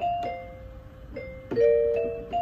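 A small toy electronic keyboard playing a slow melody, mostly one clear note at a time, with a louder, held lower note about one and a half seconds in.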